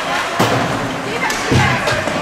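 Ice hockey play in an indoor rink: a sharp crack about half a second in, then a heavier dull thud, typical of stick, puck and bodies against the boards. Spectators' voices run underneath.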